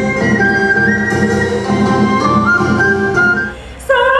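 Traditional Vietnamese ensemble music: a high, flute-like melody of held notes stepping up and down over lower plucked-string accompaniment. It breaks off briefly near the end, just before a woman's singing voice comes in.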